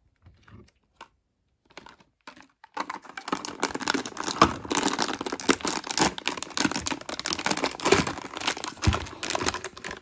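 Plastic blind-bag wrapper crinkling and being torn open by hand: a dense run of sharp crackles that starts about three seconds in, after a few soft taps.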